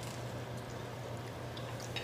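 Quiet room tone: a steady low hum under a faint even hiss.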